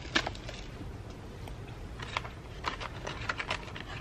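Scattered light clicks and taps from handling at a plastic seed-module tray, irregular and a few per second, over a faint steady background.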